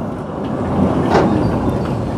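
Articulated tram rolling slowly past close by, a steady rumble of its wheels and running gear on the track.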